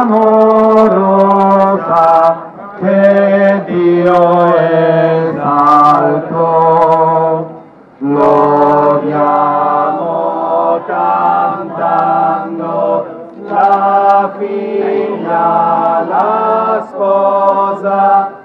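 Voices singing a slow Italian hymn to the Virgin Mary, long held notes phrase by phrase, with a short breath break about eight seconds in.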